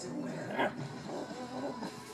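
Pug growling low and steadily as it guards its chew bone from a reaching hand, with one short sharp sound about half a second in.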